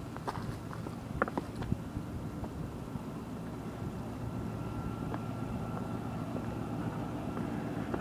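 Footsteps on large breakwater boulders, with a few light knocks and scuffs in the first two seconds, over a steady low rumble.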